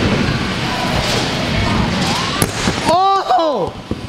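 Mini scooter wheels rolling and rumbling on a ramp, then one sharp bang about two and a half seconds in as the rider crashes a flare attempt, followed by a short cry.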